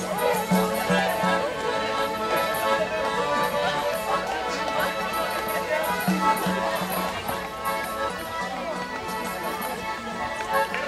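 Traditional folk dance music playing, sustained chords over a regular low beat, with people's voices mixed in.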